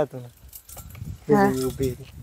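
A person's voice speaking briefly, twice, with light metallic jingling and clinks in between.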